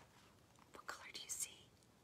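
Near silence, with a faint, short breathy hiss about a second in.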